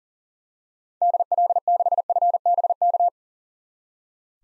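Machine-sent Morse code at 40 words per minute: one steady mid-pitched tone keyed in fast dots and dashes for about two seconds, starting about a second in, spelling out the amateur radio callsign DL6FBK.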